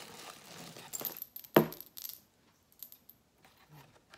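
Pieces of jewelry clinking and rattling together as they are handled and sorted. There is a rustle in the first second, then a few sharp clacks, the loudest about a second and a half in, and a few faint clicks after it.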